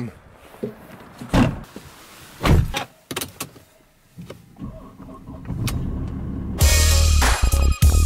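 A few knocks and clicks, then a Mercedes car engine starting with a low hum. Loud electronic music with a heavy bass beat comes in about two-thirds of the way through and is the loudest thing.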